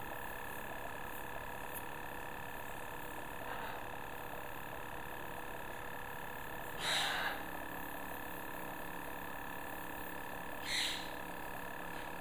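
Luminess airbrush makeup compressor running with a steady, even hum as air sprays from the wand, with two short breathy sounds about seven and eleven seconds in.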